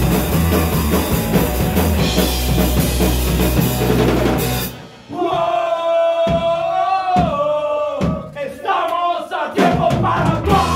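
Punk rock band with drum kit and distorted electric guitar playing loud, cutting off abruptly about halfway through. Then a single long held note rings and bends down in pitch twice, over a few separate drum hits.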